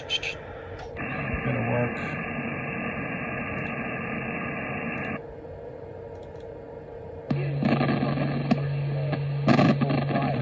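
2-metre receiver audio from a FlexRadio 6400 SDR with a transverter, heard through a speaker. First comes steady sideband hiss. About five seconds in, the mode changes to FM and it drops to a quieter hiss. Near seven seconds an FM signal opens up with a steady low hum and a man's voice.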